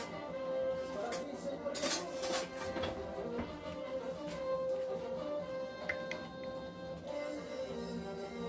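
Soft background music with long held notes. A few brief clinks come about two seconds in.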